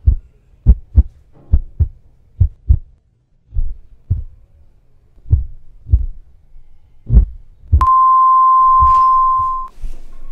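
Heartbeat sound effect: paired lub-dub thumps that come further and further apart as the beat slows. About eight seconds in it gives way to the steady beep of a heart monitor's flatline, lasting about two seconds, the sign that the heart has stopped.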